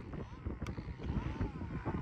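Distant 1/5-scale RC car's modified Zenoah two-stroke engine faintly revving up and down twice under wind rumble on the microphone. The engine runs but the car has lost drive, which the owner suspects is a broken pinion.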